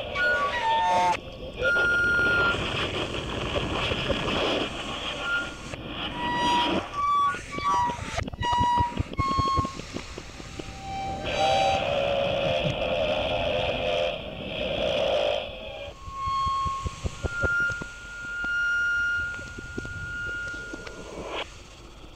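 Experimental tape-collage music built from layered recordings of everyday sounds, with no samples or effects: short held whistle-like tones, patches of hiss and fast clicking change every few seconds. Near the end a single held tone runs for several seconds over fainter clicks.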